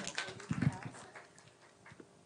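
Short vocal reactions from people in a small room, such as laughter and brief exclamations, fading away after about a second.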